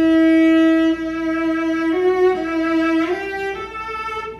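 Solo cello bowed on the A string: one long sustained note, then a few shorter notes stepping mostly upward. The bow follows a figure-eight path, the player's way of drawing a bigger sound on the high strings.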